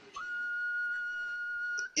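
Background music holding one steady, high, whistle-like note for most of the two seconds, with no other sound over it.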